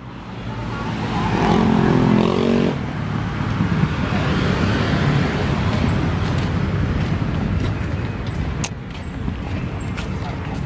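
Road traffic: a steady noise of cars passing on a busy multi-lane road. One vehicle's engine note stands out briefly about two seconds in.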